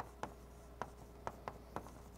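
Chalk on a blackboard as a formula is written: about seven short, sharp taps and strokes, irregularly spaced a quarter to half a second apart.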